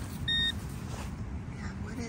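A metal detector gives one short, steady beep about a quarter second in, sounding off a buried target. Under it is a low, steady rumble.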